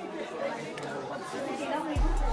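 Indistinct chatter of several people talking, with no words clear.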